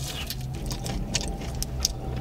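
Steady low hum of a car heard from inside the cabin, with a few light crackles and clicks about a second in and near the end.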